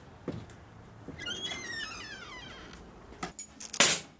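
A knock, then a high wavering door-hinge creak that glides down in pitch for about a second and a half, and a short loud rustle near the end.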